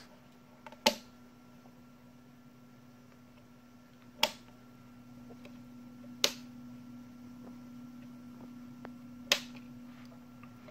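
Small rocker switch on a battery charging panel being flicked, four sharp clicks a few seconds apart, over a faint steady hum.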